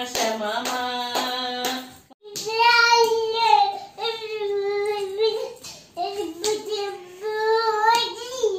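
Hand claps about twice a second over a sung tune. After a short break about two seconds in, a high child's singing voice holds long, wavering notes.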